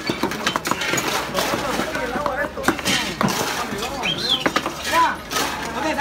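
Background chatter of a busy bar, with frequent short knocks and clinks from work on the counter.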